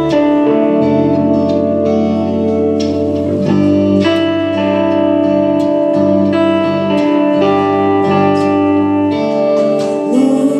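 Live band playing an instrumental passage led by two electric guitars, a Stratocaster-style and a Les Paul-style, with sustained notes over a low line that drops out shortly before the end.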